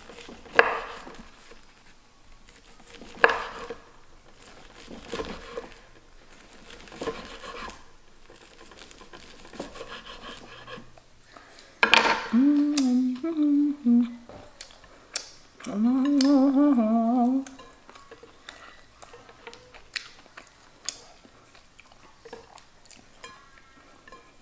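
A knife slicing through nori-wrapped sushi rolls, each cut ending in a sharp knock on a wooden cutting board, every couple of seconds. About halfway through, a woman hums two short phrases of a tune.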